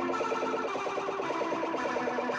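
Looped electric guitar chord played through an Idiotbox Effects 02-Resonant-19 Vibrato pedal: the sustained notes warble in a fast, even pulse from the pedal's vibrato.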